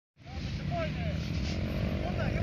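Small 125 cc dirt bike engine idling steadily.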